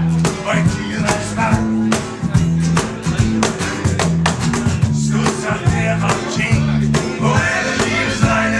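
Live acoustic folk-rock band playing: strummed acoustic guitars over a low, stepping bass line and a steady percussive beat, with a male lead vocal singing at the start and again near the end.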